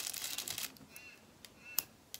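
Embroidery thread drawn through taut fabric in a wooden hoop: a rasping pull about half a second long, then a few faint squeaks. A sharp click comes near the end.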